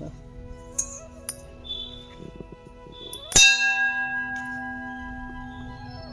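A metal vessel struck once about three and a half seconds in, ringing on with a long, slowly fading bell-like tone. A fainter ring from an earlier tap lingers before it, with a few light clicks.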